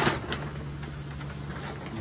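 A short hiss from a small air spray gun right at the start, with a click just after, then a steady low hum under a faint even hiss.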